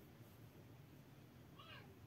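Near silence: room tone, with one faint, short pitched call that rises and falls near the end.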